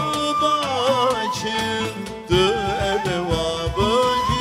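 A male voice singing a Turkish Sufi (tasavvuf) melody, with ornamented turns and glides in pitch, over a plucked oud.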